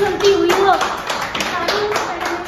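Hands clapping in quick, repeated claps.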